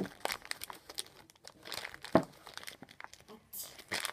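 Wrapping paper crinkling in irregular crackles as its corners are folded in by hand around a ball. One crackle about halfway through is louder than the rest.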